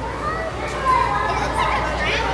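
Children's voices and background chatter in a busy indoor hall, with no one close to the microphone speaking clear words.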